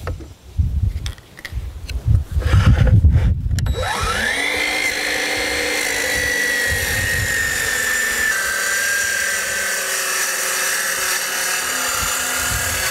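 A DeWalt plunge-cut track saw starting about four seconds in. Its motor whine rises quickly to speed and then runs steadily as it cuts along the track, dipping slightly in pitch partway through. Before that there are a few knocks and handling bumps as the saw is set on the track.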